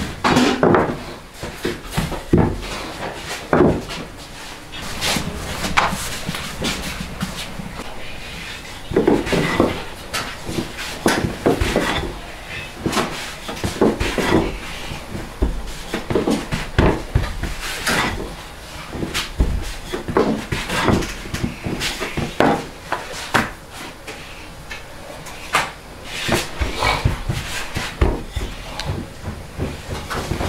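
Thin rolling pin rolling and knocking on a floured wooden worktable as dough is rolled out into flat rounds, giving an irregular run of wooden clacks and taps.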